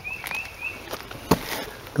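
A small bird chirping, about four short high notes in quick succession, followed about a second later by a single sharp click.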